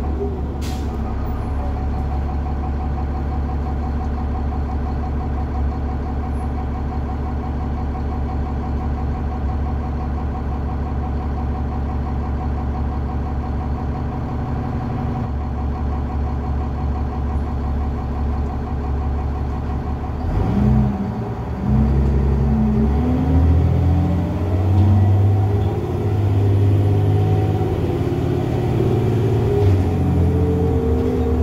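The Cummins ISC diesel engine of a 2001 New Flyer D30LF transit bus, heard from inside the cabin, idles steadily with a short sharp click near the start. About two-thirds of the way through, the bus pulls away: the engine pitch climbs and falls back in steps as the Allison automatic transmission shifts up, and the engine gets louder.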